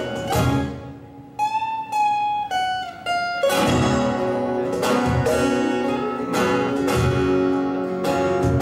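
Two acoustic guitars and a cajon playing an instrumental passage without singing. About a second in, the strummed chords drop away to four single ringing notes that step down in pitch. Full strumming and the cajon beat come back about halfway through.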